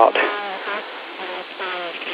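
A faint voice murmuring over a telephone line in short, broken sounds, thin and buzzy from the line's narrow bandwidth.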